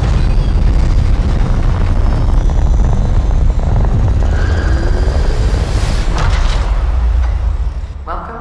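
Film sound design of a spacecraft's engines at launch: a loud, sustained deep rumble with a hiss over it, surging about six seconds in and easing slightly near the end.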